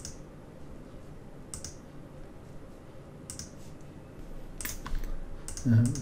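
Computer mouse clicks, single ones about a second and a half apart and then a quick cluster of several near the end, over a faint low hum.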